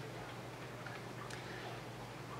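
Quiet room tone: a low steady hum, with a faint light tick a little past halfway.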